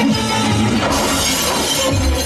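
Film fight-scene soundtrack: dramatic background music, with a sudden shattering crash about a second in that lasts about a second.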